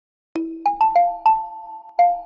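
Short musical logo jingle: five bright struck notes in quick succession, each ringing on, beginning about a third of a second in.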